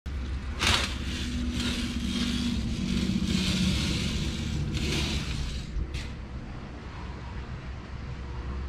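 Steady low rumble and hum, with rustling swells as a window curtain is pulled aside, the sharpest shortly after the start.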